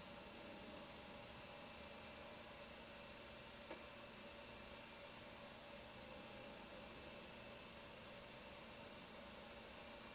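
Near silence: room tone, a steady faint hiss with a low hum, and one tiny click about a third of the way in.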